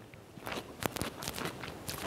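A dill pickle being bitten and chewed: a few crisp crunches and clicks, mostly in the second half.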